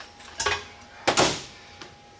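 Metal handling noise: a short clunk about half a second in, then a louder clank that trails off in a brief scrape about a second in, as a steel refrigerant recovery cylinder and a wrench are moved on a metal workbench.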